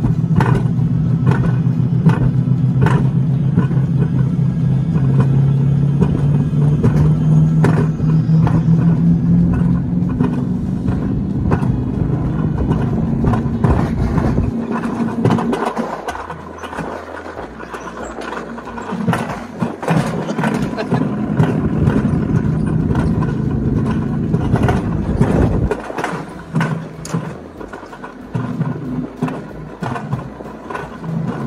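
Mountain coaster sled rolling down its steel rail track: a steady rumble and hum from the wheels, with frequent clicks and rattles. The rumble drops away briefly about halfway through and fades again near the end.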